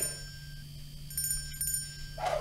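Faint electronic chime tones, high and bell-like, over a steady low hum, with a brief twinkling flutter about a second in.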